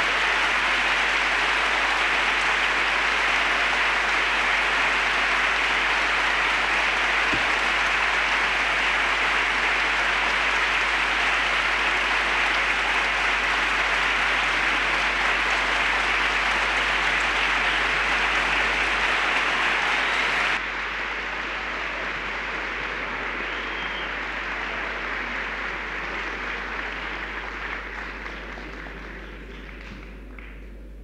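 Concert-hall audience applauding steadily; about two-thirds of the way through the sound drops abruptly to a quieter level, then fades out near the end.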